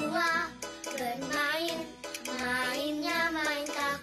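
Children's pop song: young girls' voices singing a melody together over a backing music track, with a short break in the line about halfway through.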